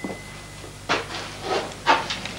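Wooden door being shut by its knob: a few short knocks and rubs of wood, the sharpest about a second in and just before the end.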